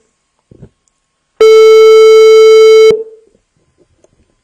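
Telephone ringback tone of an outgoing call: one loud, steady, buzzy beep about a second and a half long, starting about a second and a half in, the sign that the called line is ringing.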